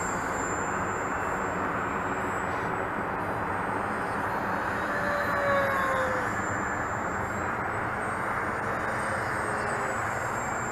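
Faint whine of a small electric-powered RC flying wing's motor and scimitar propeller flying overhead, dropping in pitch as it passes about halfway through, over a steady background hiss.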